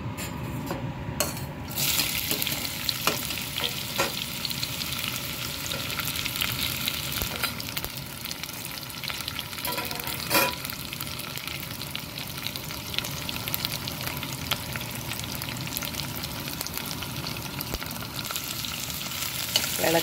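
Sliced red onions frying in hot oil with mustard seeds in a stainless steel pot: a steady sizzle that starts suddenly about two seconds in and keeps on. Scattered small clicks run through it, with one sharper knock about ten seconds in.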